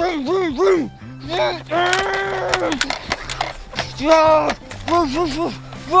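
A man's voice making engine 'vroom' noises for a toy truck: short rising-and-falling revs, one longer held one about two seconds in, then more short revs. Background music with steady low notes plays underneath.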